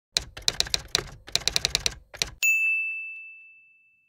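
A quick run of sharp clicks in three bursts, like typing, then a single high bell-like ding about two and a half seconds in that slowly rings out.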